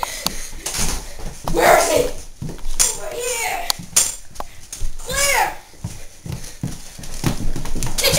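Children shouting and yelling in short wordless calls, with knocks and thumps from running and jumping onto a bed in a small room.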